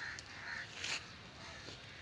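A crow cawing faintly, a few short caws in the first second.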